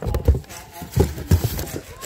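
A string of irregular low thumps, about five in two seconds: a girl's feet striking a concrete store floor as she runs.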